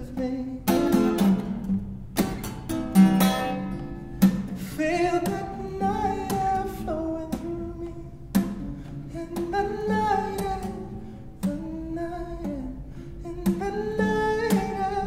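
Steel-string acoustic guitar picked and strummed in an instrumental passage of a song, with a man's wordless voice holding and gliding between notes above it.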